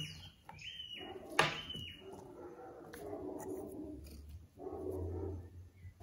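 Handling noise as a cut-open FRAM oil filter is taken apart by gloved hands: the top comes off the steel can and the paper cartridge is pulled out. There is a sharp click about a second and a half in and a few short squeaks.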